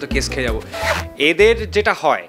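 A man talking into a handheld microphone, with background music underneath that stops at the end.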